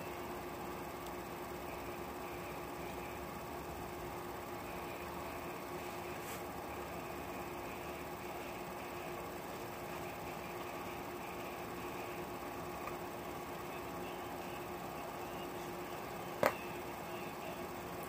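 Steady hum of a window air-conditioning unit running, a constant drone with a few held tones. One sharp click near the end.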